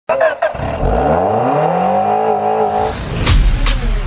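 Car engine revving up, its pitch rising and then levelling off as it holds speed. Electronic music with a hard, driving beat cuts in a little after three seconds.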